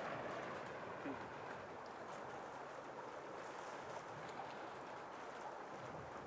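Faint, steady rush of fast-flowing river water.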